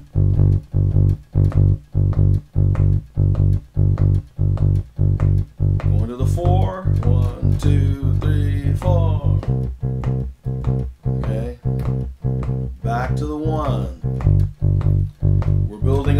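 Electric bass guitar played fingerstyle in a Chicago-style blues shuffle in G, a steady run of evenly paced plucked low notes. The root shifts to a new chord about nine and a half seconds in, as the 1-4-5 progression moves on.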